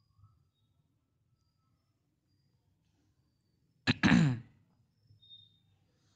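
A man clearing his throat once, a short harsh burst about four seconds in; otherwise near silence.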